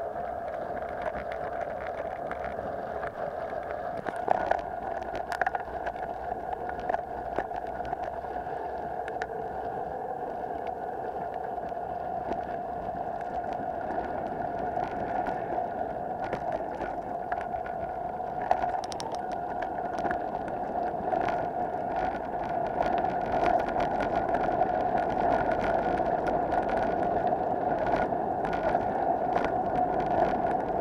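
Mountain bike riding along a dirt trail: a steady buzzing hum from the moving bike, with scattered clicks and rattles over bumps, getting louder from about twenty seconds in.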